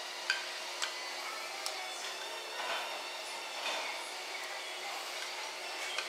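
A ceramic soup spoon scraping and clicking against a plate of fried rice, a few light clicks in the first two seconds, over a steady background hiss.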